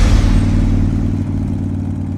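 Motorcycle engine running with a steady low pulse, getting gradually quieter.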